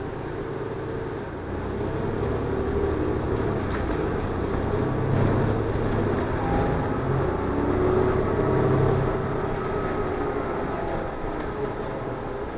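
City transit bus running along a street, heard from inside the passenger cabin: a steady engine and drivetrain hum with road noise, growing louder a couple of seconds in as the bus gets under way.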